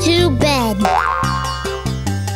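Bouncy children's-song backing music with a cartoon voice chattering wordlessly in a wavering pitch, then a short rising boing sound effect about a second in.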